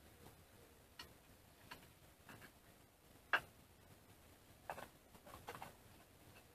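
Quiet, scattered clicks and knocks of aluminium extrusion and steel guide rods being handled and fitted together during reassembly of a CNC router's Y-axis frame. The sharpest knock comes just past the middle, with a quick cluster of clicks near the end.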